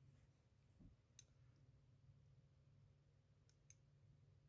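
Near silence: room tone with a soft thud under a second in and a few faint clicks, one a little over a second in and two close together near the end.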